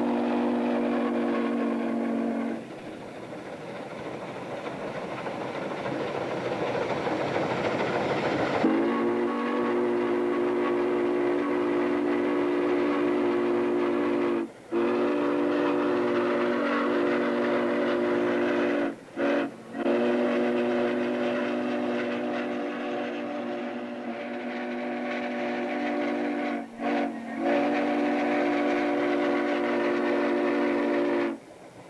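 Norfolk & Western 611's chime steam whistle, several tones sounding together, blown in long blasts with short ones between. Its middle sequence runs long, long, short, long, the grade-crossing signal, as the J-class 4-8-4 steam locomotive runs at speed. Between the first two blasts, the rushing noise of the running train swells for several seconds.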